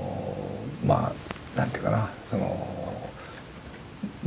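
A man's voice making a few short, hesitant murmurs and drawn-out filler sounds between phrases, with pauses in between.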